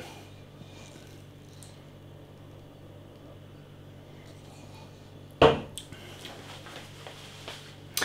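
Quiet room tone while beer is sipped from a stemmed glass, then a single sharp clunk about five and a half seconds in as the glass is set down on a hard surface.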